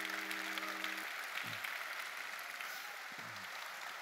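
Audience applauding, easing off slightly toward the end. A low steady hum underneath cuts off about a second in.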